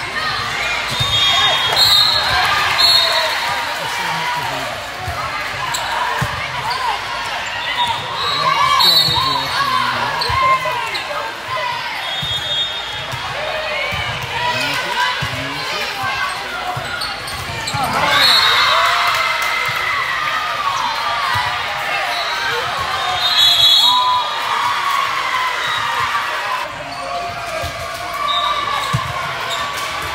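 Indoor volleyball play in a large, echoing gym: the ball being struck and bouncing, sneakers squeaking on the sport court, and players and spectators calling out and chattering.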